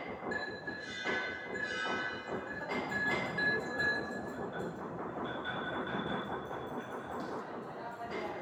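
Hand kneading and pressing powder wetted with alcohol in a porcelain mortar: a steady gritty rustle. Faint high steady tones from another source sound over it, clearest in the first half.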